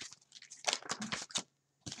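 Oracle cards being handled as one is drawn from the deck: a quick series of crisp paper snaps and rustles, busiest in the first second and a half.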